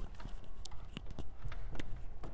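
Footsteps on a hard floor: a handful of uneven knocks over a low rumble.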